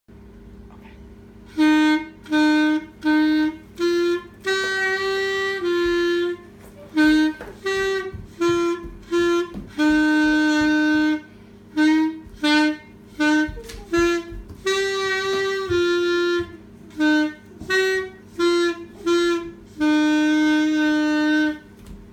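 Clarinet playing a simple tune in separate notes, some short and some held for about a second, beginning about a second and a half in and stopping just before the end.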